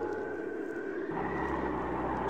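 Cartoon sound effect of a car engine running steadily, a low hum that grows stronger about a second in, with a faint high tone held above it.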